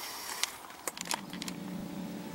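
A steady low engine hum comes in about a second in, over faint hiss and a few light clicks.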